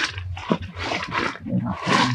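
Macaques making short breathy calls, two noisy bursts about half a second and a second and a half in.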